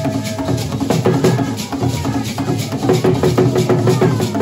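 Brekete drumming: a large double-headed brekete bass drum and smaller hand drums playing a fast, dense, steady rhythm, with voices holding sung notes over it.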